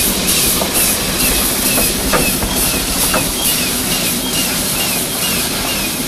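Old American-built sugar-mill steam locomotive No. 1518 working slowly past, its exhaust chuffing in a regular beat over a steady hiss of steam, with short squeaks from the running gear about twice a second.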